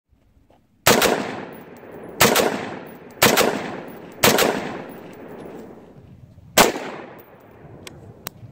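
Five rifle shots, unevenly spaced over about six seconds, each followed by a long fading echo.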